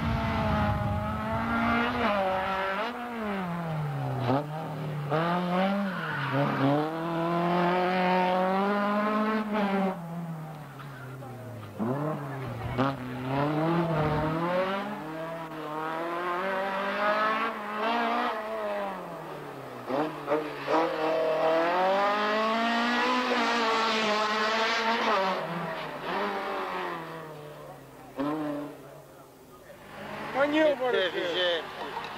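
Race car engines revving hard and dropping back again and again as the cars accelerate and brake through a tight slalom course, the pitch climbing and falling every second or two. The engine note briefly drops away about twelve seconds in and again near the end.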